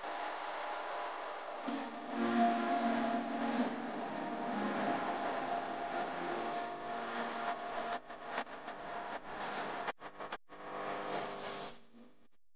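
Hot oil sizzling in a kadai as chopped onions go in and fry, with a steady tone running underneath.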